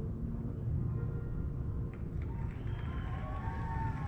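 Steady low rumble of room background noise, with faint drawn-out tones near the end.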